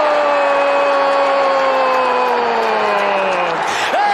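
A football commentator's long drawn-out goal shout: one held note, slowly falling in pitch for about three and a half seconds and breaking off near the end, over the noise of a stadium crowd.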